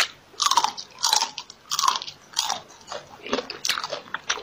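Close-miked chewing and biting of food, in short repeated strokes about every two-thirds of a second.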